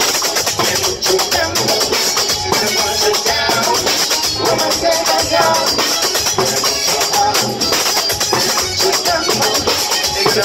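Live Latin dance band playing an up-tempo song: congas, electric guitar and a metal cylinder shaker keeping a steady fast rhythm, with melodic voices or instruments over it.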